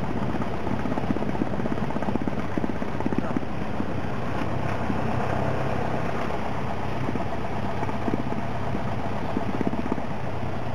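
A Cessna 172SP's four-cylinder Lycoming engine and propeller running at low taxi power, heard from inside the cabin as a steady drone with a fast, even pulsing that is strongest in the first half.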